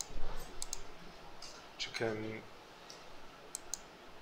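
Sharp computer mouse clicks: a few quick ones near the start and a pair near the end, as several files are picked out one by one for a multi-select.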